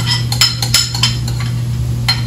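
A metal utensil tapping and scraping against a bowl several times in quick succession, knocking chopped vegetables out into a Dutch oven: a run of sharp clinks.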